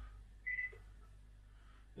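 A single short high electronic beep, about a quarter second long, from the TENMIYA RS-A66 Bluetooth boombox as its mode button is pressed, about half a second in; otherwise faint room tone.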